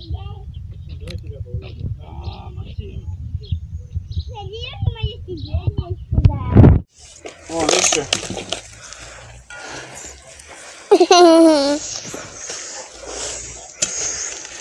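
Young children's voices, calling and babbling without clear words, with wind rumbling on the microphone. About seven seconds in the wind stops, and later a loud, wavering vocal cry is heard.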